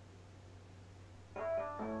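Background piano music: after a faint low hum, piano notes start suddenly about a second and a half in, followed by a second chord just before the end.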